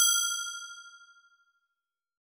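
A single bright bell-like ding, a sound effect for the intro logo, struck just before and ringing out, fading away within about a second and a half.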